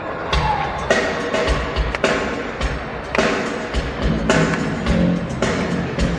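Live rock band playing the opening of a song, with a steady drum beat of about two beats a second under keyboards.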